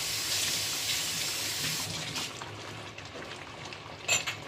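Steady rush of running water, like a kitchen tap, that stops about two seconds in, leaving faint small clicks.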